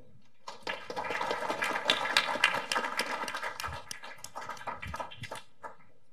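Applause from a small audience of clapping hands, starting about half a second in, strongest in the middle and dying away near the end.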